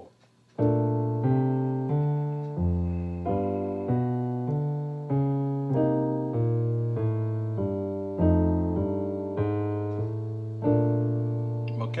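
Digital piano playing a jazz walking bass line: steady, evenly spaced bass notes, about one and a half a second, in the left hand under two-note third-and-seventh chord voicings in the right. The progression is B-flat major seventh, G seventh, C minor seventh and F seventh; it starts about half a second in and stops just before the end.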